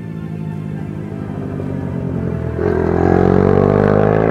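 Background music with a minibike engine mixed in, which grows loud about two and a half seconds in as it accelerates, its pitch rising steadily.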